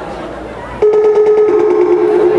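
A loud two-note electronic chime starts about a second in: a steady tone that steps down in pitch after half a second and holds, with a fast flutter on it, over the background chatter.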